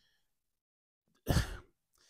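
Near silence for about a second, then one short sigh from a man close to a handheld microphone.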